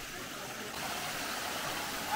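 Small waterfall running over rock into a pool: a steady rush of water.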